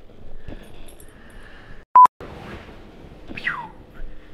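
A single short electronic beep tone, cut into the soundtrack with a brief dropout to silence on either side, about halfway through; it is the loudest sound. Faint room noise, and near the end a short cry falling in pitch.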